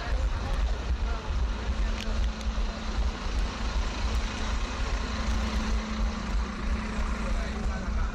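Busy-street noise on a running orienteer's headcam microphone: a heavy, uneven rumble of wind and movement on the mic. From about three seconds in, the engine of a double-decker bus passing close alongside drones steadily.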